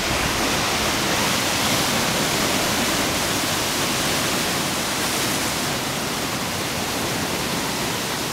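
Rough sea surging and churning through a narrow rocky inlet: a steady, loud rush of breaking, foaming water that eases slightly after about six seconds.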